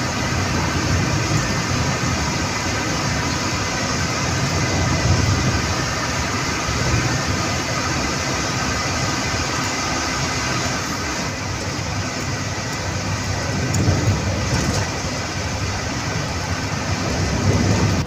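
Bus running at speed, heard inside its cabin: a steady, loud drone of engine and road noise.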